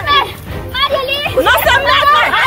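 Several women and children shouting and shrieking over one another during a scuffle, in overlapping high-pitched cries with a short lull about half a second in.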